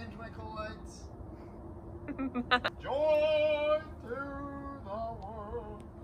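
Singing voice: a melody with long held notes, the longest about three seconds in and a wavering one near the end.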